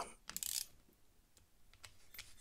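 Small metal clicks and a brief scrape from a precision screwdriver bit working a tiny screw in a folding knife's handle. The loudest is a short scrape about half a second in, followed by a few fainter ticks.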